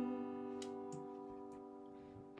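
Acoustic guitar's final chord ringing out and slowly fading away, with a couple of faint ticks.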